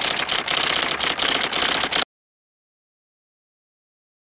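Typewriter sound effect: a rapid run of clacking keystrokes lasting about two seconds, cutting off suddenly.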